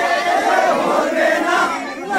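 A group of men singing and chanting together in unison for a Pahadi folk circle dance, many voices at once, loud. The voices dip briefly near the end as one phrase ends.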